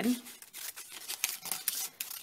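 Scissors cutting lengthwise through a paper strip: a run of short, crisp, irregular snips with the rustle of the paper being turned.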